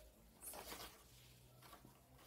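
Faint rustle of a sheet of paper being handled, loudest about half a second in, with a fainter rustle near the end.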